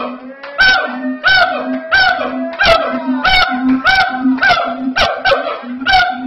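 A siamang gibbon calling very loudly: a rapid, regular series of sharp barking whoops, about one and a half a second, with a low steady tone sounding between each call.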